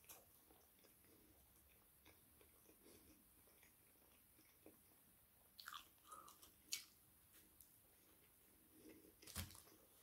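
Faint chewing of a chicken burger, with a few short, sharper crunching clicks about six to seven seconds in and once more near the end.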